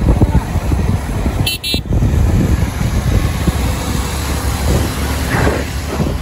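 Wind buffeting the microphone over the engine and road noise of riding along on a motorbike or scooter among other scooters. A brief high-pitched sound cuts in about a second and a half in.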